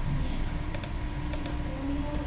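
Computer mouse clicking: two quick pairs of clicks, the first under a second in and the second about a second and a half in, over a steady low hum.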